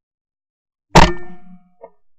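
A single 12-gauge shot from a Beretta 682 Gold E over-and-under shotgun: one sharp, very loud report about a second in, ringing away briefly, slowed to about half speed. A faint click follows near the end.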